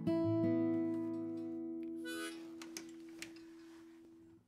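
An opening chord on acoustic guitar and harmonica, struck at once and left to ring, fading slowly over about four seconds. There is a short extra note about two seconds in.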